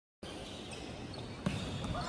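Indoor volleyball match: a steady background of spectators' voices, with one sharp smack of the volleyball about one and a half seconds in.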